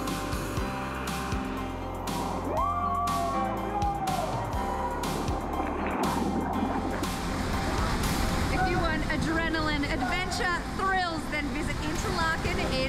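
Background music playing throughout, with a single gliding call about three seconds in and excited wordless voices, shrieks and laughter, from about eight seconds on.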